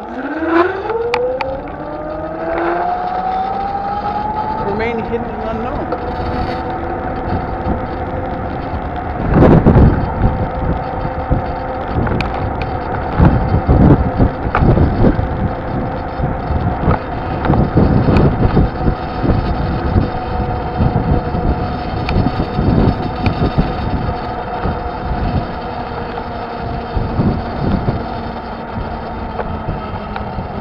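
A vehicle's motor whine rising in pitch over the first few seconds as it speeds up, then holding at a steady pitch while it cruises. Wind buffets the microphone in gusts throughout, loudest about ten seconds in.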